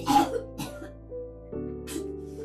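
Woman retching and vomiting into a toilet bowl: three harsh heaves, the loudest at the very start, another about half a second in and one near the end, over a steady music score.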